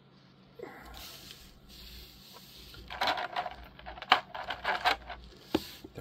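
Small hard plastic action-figure parts being handled, with soft rustling at first and then a quick run of sharp clicks and clacks in the second half as pieces knock together.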